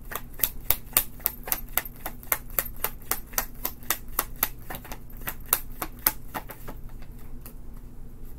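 A deck of tarot cards being shuffled overhand by hand, the cards clicking against each other in a quick, even run of about five clicks a second that thins out near the end.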